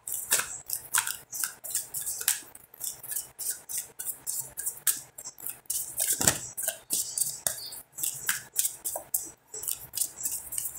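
Tarot cards shuffled by hand: an irregular run of short, crisp card clicks and flicks, several a second.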